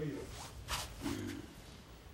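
Brief murmured speech sounds from a man, with a short rustling hiss in between.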